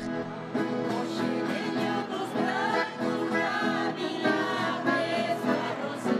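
An ensemble of acoustic guitars strummed and plucked together, with voices singing along.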